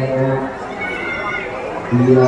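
A voice calling out in drawn-out, held syllables, loudest at the start, over the murmur of a crowd.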